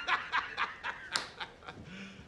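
A man laughing, a run of short breathy snickers.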